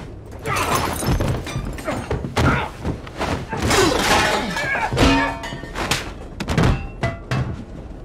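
Fight sound effects: a run of heavy thuds and thumps as bodies slam into walls and furniture, with music underneath.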